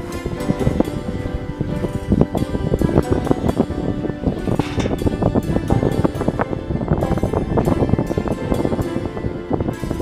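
Background music with a busy percussive beat.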